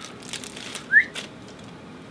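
Hands handling a GoPro battery and its small plastic packaging: a few light clicks and rustles, with one short rising chirp about a second in, the loudest sound.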